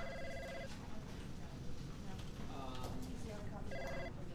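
Office desk telephone ringing with a trilling electronic ring: one ring ends under a second in and the next starts near the end, about four seconds apart. Under it runs a steady office hum with faint background voices.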